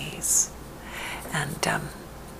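Only speech: a woman talking softly in a near-whisper, with a short hiss about a quarter-second in and a few soft words near the end.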